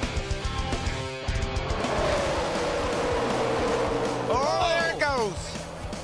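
Rock music with electric guitar for about the first two seconds. Then stock-car race sound: a steady rushing engine noise with a tone that falls and then holds, and engine notes that swoop up and down near the end.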